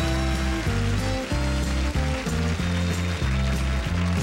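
Country band playing the instrumental introduction to a song, with guitars, fiddle and drums over a steady bass line.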